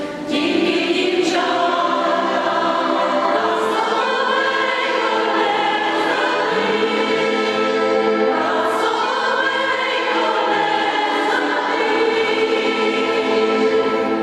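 Small women's folk choir singing in several-part harmony, with long held notes; the song draws to its close near the end.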